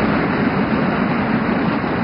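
Audience applauding steadily in a large hall, with a faint murmur of voices underneath.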